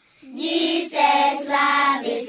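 A group of children singing together in long, held notes, coming back in after a short break between phrases at the start.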